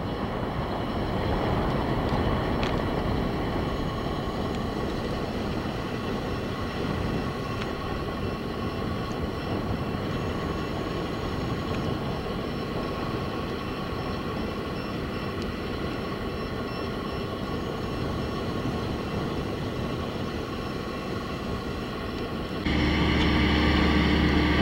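Diesel engines of mobile cranes running steadily on a construction site, a continuous rumble. Near the end a louder, deeper engine hum comes in suddenly.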